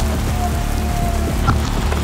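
Steady rain falling on wet pavement, an even hiss, with background music underneath and a small click about a second and a half in.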